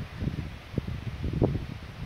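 Wind buffeting the microphone in irregular low rumbles and puffs, over a faint steady hiss.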